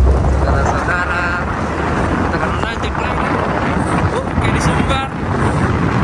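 Steady rush of wind over the microphone with engine and road noise, heard from the roof of a moving Isuzu Elf minibus.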